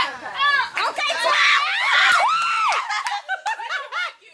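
Women's voices shrieking and laughing excitedly, with one long high-pitched scream about a second in.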